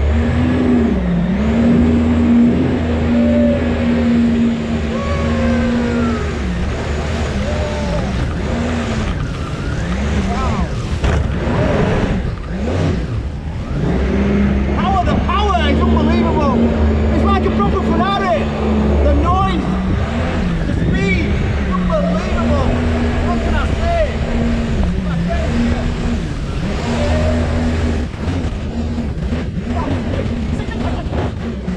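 Engine of a small Ferrari-styled speedboat running hard, its steady note dipping and rising again several times as the throttle is eased and opened, over a wash of water and wind.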